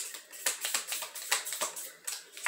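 A deck of tarot cards being shuffled by hand: a quick, irregular run of soft card clicks and slaps.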